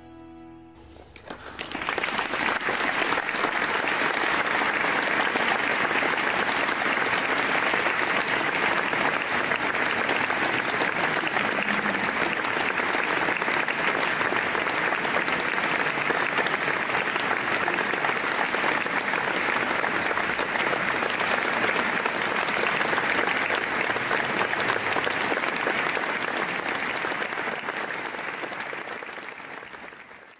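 Audience applause breaking out about a second and a half in, just as the last notes of the string ensemble die away, then continuing steadily and tapering slightly near the end.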